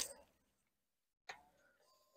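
Near silence, with one faint click about a second in: the Kawasaki Z900's ignition being switched on to wake the TFT dash.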